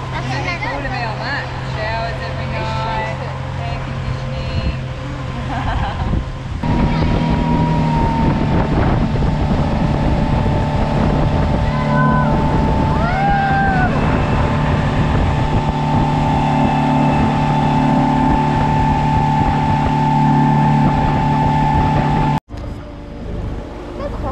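Small motorboat's engine running, with the rush of water and spray off the hull. About six and a half seconds in it gets suddenly louder as the boat runs at speed, and the sound cuts off abruptly near the end.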